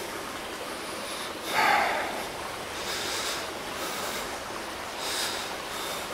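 Dry branches and brush rustling and scraping as someone pushes through a thicket on foot, with a loud snort of breath about a second and a half in. Shorter bursts of rustling come near the middle and near the end.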